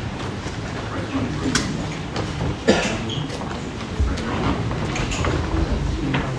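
Indistinct murmur of a crowd talking quietly while moving about, with scattered knocks and footsteps. One sharper knock about two and a half seconds in is the loudest sound.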